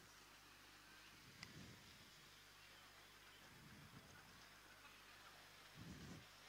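Near silence: faint room tone on the commentary microphone, with a soft click and a couple of faint low bumps.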